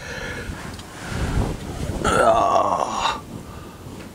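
A man's wordless vocal sound, a drawn-out groan of about a second that starts halfway through, over low rustling.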